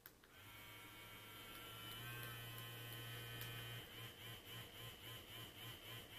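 Adam & Eve Magic Massager Rechargeable Rose Gold Edition wand vibrator switched on with a click, its vibration motor humming faintly and steadily. About two seconds in it steps up to a higher speed, and near four seconds in it changes to a pulsing pattern of about three pulses a second as she cycles through its functions.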